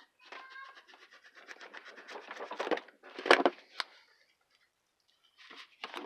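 Rapid scratchy strokes of a small hand saw cutting through EVA foam, growing louder, then a single knock a little after three seconds and a sharp click.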